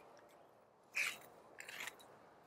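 Long-reach tree pruner snipping through a young peach shoot about a second in, a short crisp cut, followed near the end by a fainter crackle.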